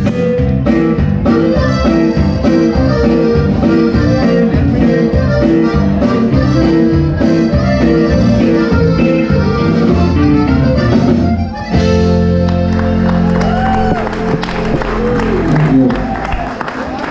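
Live Tejano conjunto band playing: two button accordions over guitar and drums in a brisk, steady rhythm. About twelve seconds in the tune stops and the band holds one long final chord, which dies away near the end.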